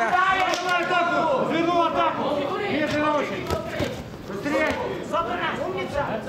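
Men's voices shouting in a large hall over crowd noise during a boxing bout, calls rising and falling in short bursts.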